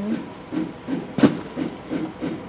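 A handbag being set down, giving one sharp knock a little over a second in, over a steady murmur of background voices.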